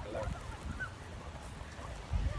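A few short honking bird calls in the first second, then quieter, over a low rumble.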